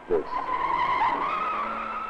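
Car tyres squealing in one long wavering screech as a car is thrown round at speed in a chase, fading near the end.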